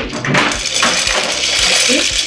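Wholewheat pasta poured from a ceramic bowl into a stainless-steel pot. It lands in a continuous rattling, hissing rush that starts just after the beginning.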